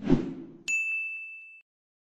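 A short whoosh of a motion-graphics transition, then about two-thirds of a second in a single bright ding sound effect that rings for about a second and stops.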